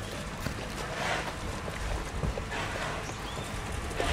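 A horse close to the microphone, breathing out in soft puffs about every second and a half, over a low steady rumble.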